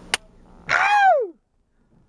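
A sharp click, then about half a second later a single high-pitched, wordless yell that slides steeply down in pitch and breaks off within about half a second.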